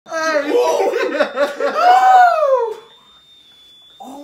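Several young men laughing and crying out in disgust at a bad smell. Near the end of the outburst comes one long cry that rises and then falls, and the voices stop about three seconds in.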